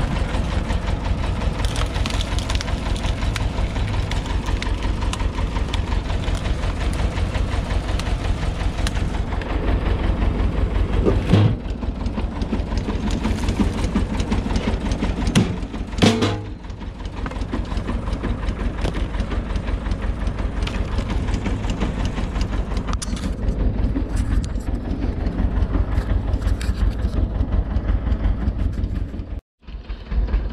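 Tractor engine running steadily, driving a PTO-powered screw cone log splitter, with an even pulsing beat. Two sharp cracks of wood splitting stand out, about eleven and sixteen seconds in.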